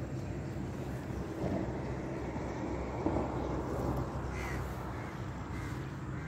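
Low outdoor background noise with crows cawing.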